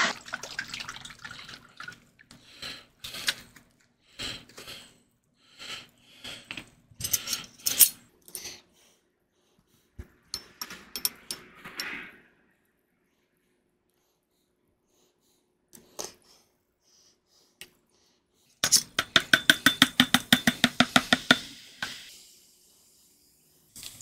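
Scattered clicks and knocks as hot sauce is poured onto a metal tablespoon. Later a metal spoon stirs a glass of Pepsi quickly for about three seconds, clinking rapidly against the glass, while the fizz hisses and dies away.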